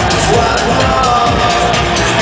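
Electronic rock band playing live at full volume, heard from within the audience: bass guitar over synthesizers with a steady beat.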